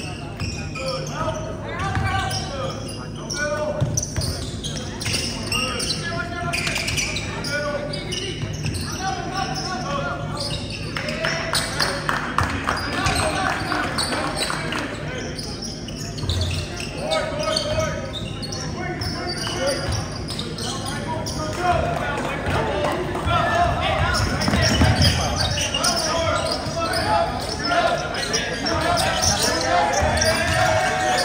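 A basketball being dribbled and bounced on the hardwood floor of a school gymnasium during a game, mixed with players' and spectators' voices calling out across the court.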